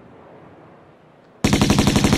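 A rapid burst of submachine-gun fire cuts in suddenly about one and a half seconds in, after a quiet stretch.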